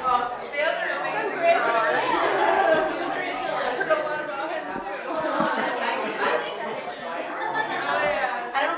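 Chatter of many people talking at once, overlapping voices in a large meeting room.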